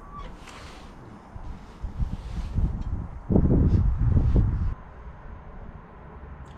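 A black pet cat right at the microphone: a loud low rumble that starts and stops abruptly, lasting about a second and a half midway through, with fainter sounds before it.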